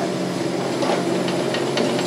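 Kubota KX71-3 mini excavator's three-cylinder diesel engine running steadily as the machine pushes dirt with its front blade, with a few faint clicks over it.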